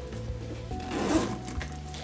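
Quiet background music with steady low notes, with a brief rustle of handling about halfway through.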